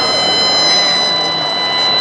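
A high-pitched horn blown in one long, steady note over a continuous crowd hubbub in a stadium.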